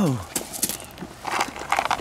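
Irregular crunching footsteps on gravel, a handful of short scuffs and clicks, after a man's voice trails off at the very start.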